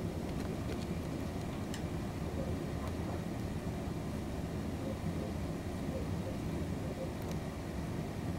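Steady low background rumble, with a few faint scratchy ticks from a flat scalpel blade paring down a thick foot callus.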